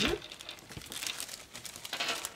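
Clear plastic craft-supply bag crinkling faintly as it is handled and moved, in small scattered rustles.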